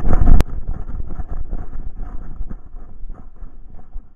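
Jostling and rubbing of a camera worn by a dog on the move, with irregular knocks from its steps on a stony path and wind on the microphone. One sharp click about half a second in.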